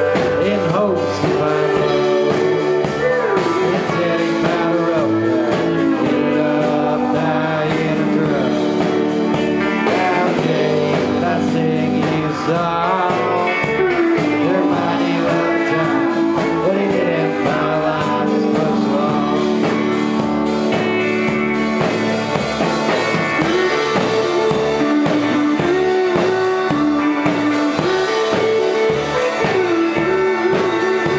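A live band playing a song at a steady full level: guitars and drum kit, with a keyboard.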